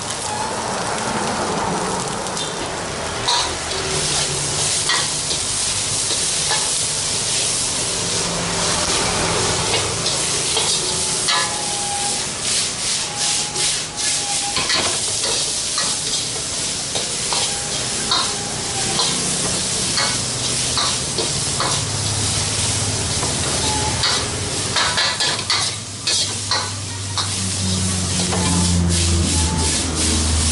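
Green beans and sweet corn sizzling in a stainless steel wok while a metal ladle stirs and scrapes them, its clicks and knocks on the wok coming thick and fast from about the middle on. A low hum comes in during the last third.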